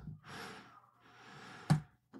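A man breathing close to the microphone: a breath, a second, fainter breath, then a short sharp mouth click near the end.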